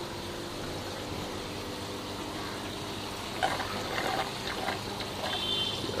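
Steady trickling of water running through an aquaponics system's grow beds and tanks, with some faint irregular sounds in the second half.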